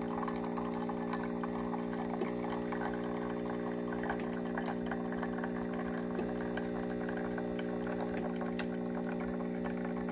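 CASABREWS 4700 GENSE espresso machine's vibratory pump running steadily through a double-shot extraction, a constant hum with faint ticks about every two seconds.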